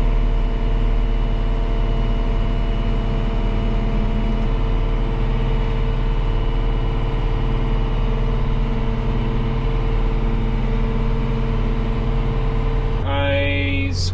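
Diesel engine of a John Deere self-propelled sprayer running steadily, heard inside the cab as a constant hum with a faint steady whine over it; the low hum shifts abruptly near the end.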